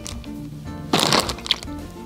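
Sharpened pencil pushed through a water-filled plastic zip bag: a short crackling crunch of plastic about a second in, then a sharp click, over background music.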